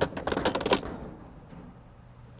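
A quick run of sharp clicks and rattles, as from handling the fuel nozzle and gas cap at a gas pump just after fueling. It lasts under a second and then dies away.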